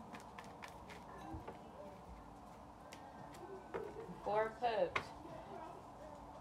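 Soft clicks and taps of a tarot deck being shuffled and cards handled on a table, with a short wordless voice sound about four and a half seconds in.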